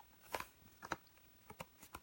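Faint handling of a folded cardstock card: a few soft, separate taps and rustles of the paper against the hands.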